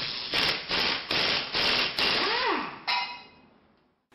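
Intro logo sound effect: a run of five short swishes about 0.4 s apart, then a tone that rises and falls, then a sharp hit that rings out and fades.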